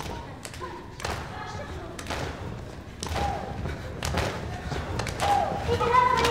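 Irregular heavy thumps of a group of people jumping and stamping on a hard studio floor, about one a second, with voices calling out between them, busier near the end.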